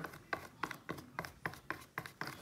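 Quiet, short taps about three to four a second: a paintbrush dabbing and stroking Mod Podge over the painted petals of a mirror frame.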